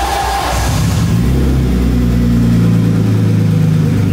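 BMW car engine running just after starting, its revs dropping and settling into a steady idle about a second in. It is running on fuel at least eight years old, after about eight years without running.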